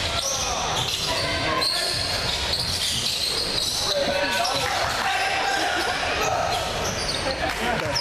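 Basketball game on a hardwood gym court: a ball bouncing and sneakers squeaking as players run, with players' voices echoing in the large hall.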